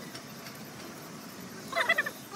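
A low steady background noise, then near the end a loud burst of rapidly wavering calls, like an animal or bird calling.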